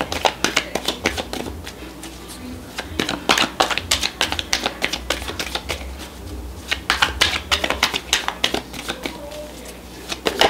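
A tarot deck being shuffled by hand, overhand. It comes in three bursts of rapid card clicks: at the start, around three to four seconds in, and again around seven to eight seconds in, over a steady low hum.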